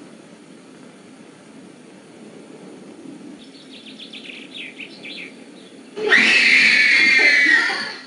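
A young child's loud, high-pitched wail that starts suddenly about six seconds in, falls slightly in pitch and lasts nearly two seconds. Before it there is only a faint background with a few short, high chirps.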